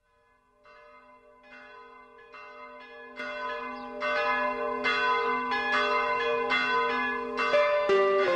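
Church bells ringing a steady peal, about two strokes a second, fading in from silence and growing louder, full from about four seconds in.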